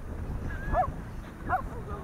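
Miniature schnauzer giving a few short, high whines in quick succession, over low rumble of wind on the microphone.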